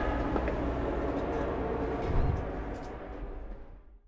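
Fading tail of an outro logo sound effect: a low rumble and a reverberant wash dying away, with a small swell a little over two seconds in, fading out near the end.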